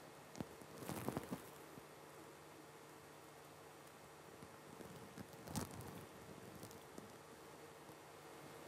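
Near silence: faint low room hum with a few soft laptop key clicks, a small cluster about a second in and one more about five and a half seconds in.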